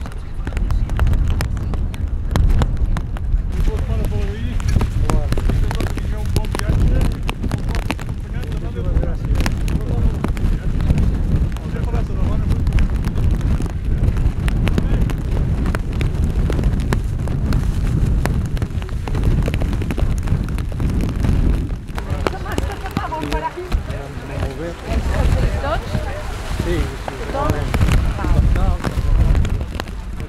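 Wind rumbling on the microphone over the chatter of a group of people talking as they walk. The voices grow clearer in the last several seconds.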